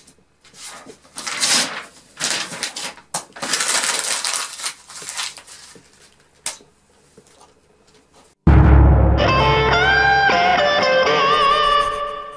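Irregular bursts of rustling noise, then loud guitar music that starts suddenly about eight and a half seconds in, with deep bass and wavering held notes.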